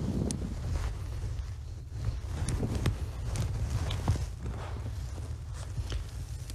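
Rustling of a bee suit and beekeeping gloves being pulled on, with a few light footsteps and small handling clicks over a steady low hum.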